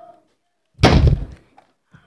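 A single loud thump about a second in, dying away within half a second.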